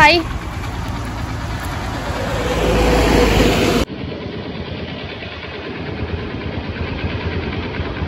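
Motor scooter engine running, its sound building over the first few seconds before cutting off suddenly; then a quieter, steady outdoor hiss.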